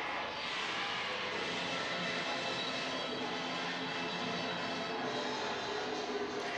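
Live concert film audio played over a room's loudspeakers: music under a steady, noisy wash, with no speech over it.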